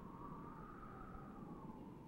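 A faint held tone that bends slightly up and then back down in pitch, over a low hum and hiss from an old film soundtrack.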